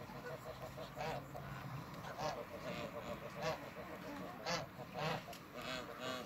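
Domestic ducks in a flock calling, short calls about once a second.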